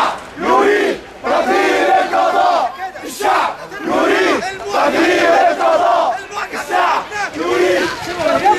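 A crowd of protesters chanting slogans in Arabic in unison, many voices shouting short repeated phrases with brief breaks between them.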